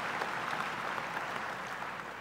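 An audience applauding, the clapping slowly dying down.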